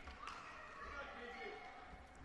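Quiet ice-rink ambience: a faint hum of the hall with distant crowd voices, and no distinct puck or stick impacts.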